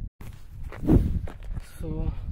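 Footsteps on a red dirt and gravel path, the loudest step about a second in. A voice starts near the end.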